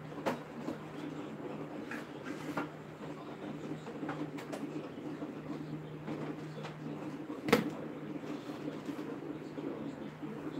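Kitchen clatter: a few clicks and knocks of things being handled and set down on the counter, with one sharp knock about seven and a half seconds in, over a steady low hum.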